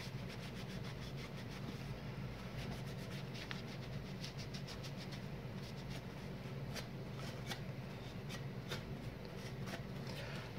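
Damp paper towel rubbing over a plastic turn signal lens and housing in quick, faint, repeated wiping strokes as the dirt is cleaned off.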